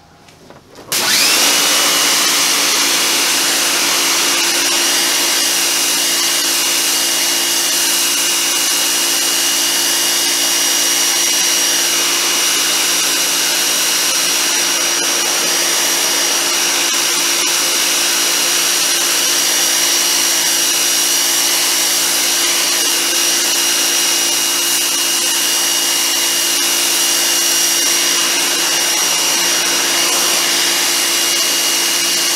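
An 1800-watt electric pressure washer starts up about a second in. Its motor whine rises quickly to a steady pitch and keeps running, under the steady hiss of a 25-degree nozzle's spray hitting wooden deck boards.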